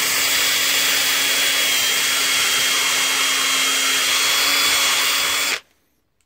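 Cordless drill running at a steady speed while fitting a metal hinge to a wooden board, then stopping abruptly near the end.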